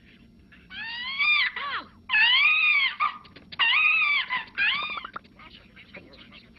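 High-pitched squeaky cartoon voices of the Zoozoo characters, four drawn-out vocal calls whose pitch rises and falls, the middle two the loudest.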